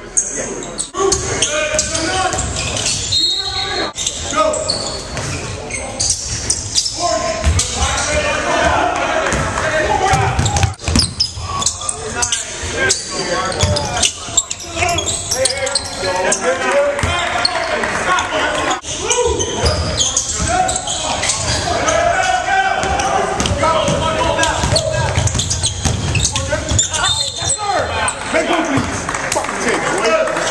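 Basketballs bouncing on a hardwood gym floor during basketball practice, mixed with players' voices and calls, in a large gym hall.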